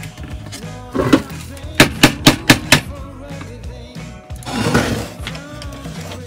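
Sharp knocks from a Genelec 1031A's amplifier board and metal mounting plate as they are worked loose: one knock about a second in, then a quick run of about five loud knocks, and a short scraping rub near the end. Music plays underneath.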